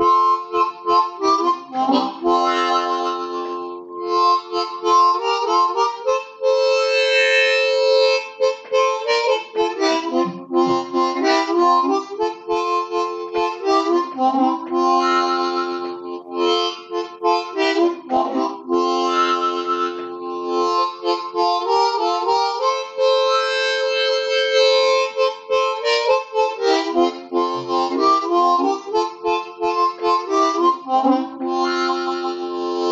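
Diatonic blues harmonica playing a song melody, blown and drawn notes moving in phrases of a few seconds each.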